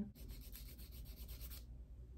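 Faint, gritty rubbing or scraping that stops about a second and a half in.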